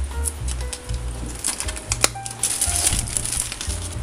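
Clear plastic shrink-wrap being torn and peeled off a cardboard figure box, crinkling and crackling, loudest in the second half, over steady background music.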